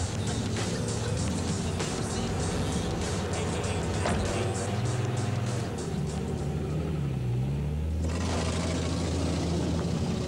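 Instrumental outro of a hip-hop track: a drum beat over a low bass line, with no rapping. The drums stop about eight seconds in, leaving a low steady rumble.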